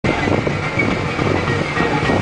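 Steady engine and road rumble heard from inside a moving vehicle.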